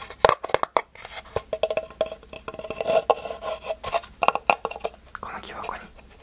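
Fingers tapping and scratching on a small wooden box packed with kinetic sand, in quick runs of taps.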